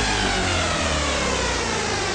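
Electronic dance music from a house mix: the kick drum drops out and a synth sweep glides steadily downward in pitch over a held bass.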